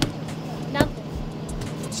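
A plastic flower frozen in liquid nitrogen is struck against a table: a light knock at the start and a sharp crack just under a second in, over a steady low background hum.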